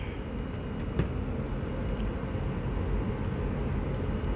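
Steady low background hum, with one light click about a second in as a shrink-wrapped cardboard box is turned over in the hand.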